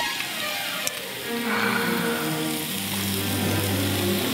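Steady hiss of meat sizzling on a grill, with background music of held low notes coming in about a second and a half in.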